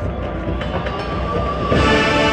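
Marching band show in a soft passage: a low rumbling texture with a single held tone. Near the end the full band comes back in with a loud sustained chord.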